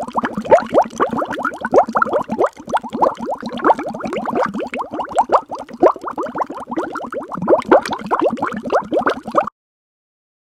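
Water bubbling and gurgling, a dense run of quick plops that cuts off suddenly near the end.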